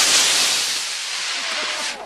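Two model rocket motors burning on liftoff: a loud rushing hiss that slowly fades as the rockets climb away, dying out near the end.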